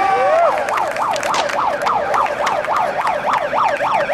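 Electronic siren in a fast yelp, its pitch sweeping up and down about four times a second after a brief held tone at the start, then cutting off at the end. Sharp clacks, likely skateboard wheels on concrete, sound under it.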